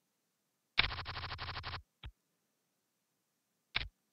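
PokerStars poker client sound effects: a rapid run of card-dealing clicks lasting about a second as a new hand is dealt, then a short click about two seconds in and another near the end as the action moves around the table.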